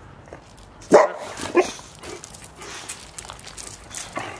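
A dog barking twice: a sharp bark about a second in and a shorter one just after.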